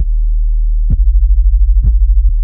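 Hip-hop beat with no melody: a deep, sustained 808-style bass note comes in at the start. A kick drum hits about a second in and again near the end, with a rapid stuttering run of low ticks between them.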